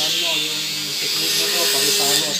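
Small high-speed flexible-shaft rotary tool running with a sanding drum, grinding a worn motorcycle valve-stem tip smooth so it stops causing tappet noise. It gives a steady high whine and hiss that stops just after the end, with voices talking over it.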